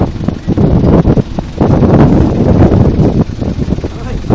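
Strong wind buffeting the microphone, a loud, uneven low rumble that swells and dips.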